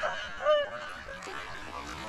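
High-pitched, helpless laughter in short squealing, honk-like bursts, two of them in the first half second, then a quieter stretch with faint sloshing of pond water.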